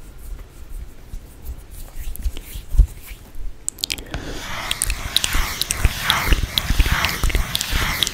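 Dry mouth sounds close to a microphone: soft clicks and smacks with breathy hisses, growing dense from about halfway. Low thumps come before that, the loudest just before the midpoint.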